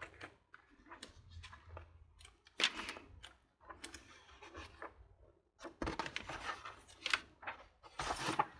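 Glossy magazine pages being turned and handled by hand: a series of soft paper rustles and flaps, loudest at about two and a half seconds in and again from about six seconds.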